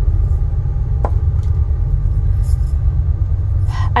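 Steady low rumble, with a few light clicks as a small clear plastic container is picked up and handled.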